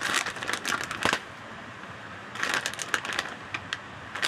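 Plastic shredded-cheese pouch crinkling as it is handled and shaken out over a bowl, in two spells of sharp crackles with a short pause in the middle.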